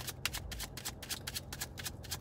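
A deck of tarot cards being shuffled by hand: a rapid, steady run of light card flicks.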